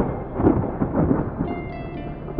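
Thunderclap: a sudden crack, then rolling rumbles that swell several times and fade after about a second and a half.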